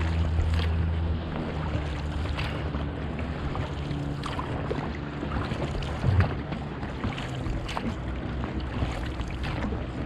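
Inflatable dinghy being rowed, with water sloshing and splashing around the oars and hull. Under it a nearby motorboat's engine hums steadily, louder at first and dropping back after about a second. One louder knock about six seconds in.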